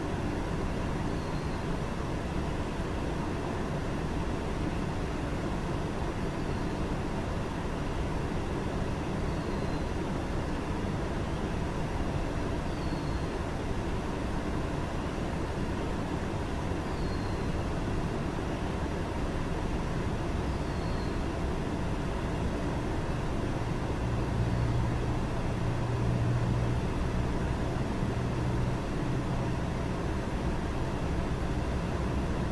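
Steady background rumble and hiss. A low hum swells for a few seconds near the end, and a faint short high chirp recurs about every four seconds.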